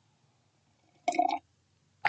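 A single short gulp as a person swallows a drink, about a second in, with near silence around it.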